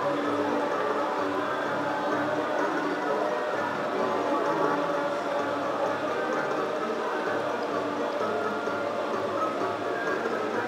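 Slot machine playing its free-games bonus music and win tones, steady throughout, over a background of casino chatter.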